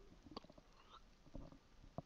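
Faint gulping and swallowing of a man drinking beer from a glass bottle, with a few soft ticks.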